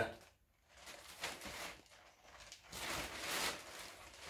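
Plastic carrier bag rustling as it is handled, in two soft stretches, about a second in and again near the three-second mark.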